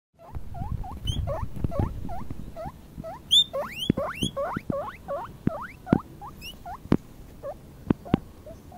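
Guinea pig pup squeaking loudly over and over: a string of short upward-sweeping squeaks, about two or three a second, thinning out in the last two seconds. Low rustling in the first couple of seconds.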